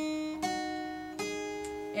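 Acoustic guitar plucking the three single melody notes E, G and A, one after another rising in pitch, each note left to ring: the second comes about half a second in, the third a little past one second.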